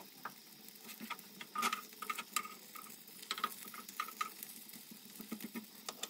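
Faint crackling and scattered clicks from a stuffed tortilla wrap toasting on a ridged grill pan as it is turned over, with a run of short squeaks in the middle.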